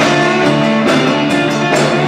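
Live rock-blues band playing: electric guitars over a drum kit with a steady beat.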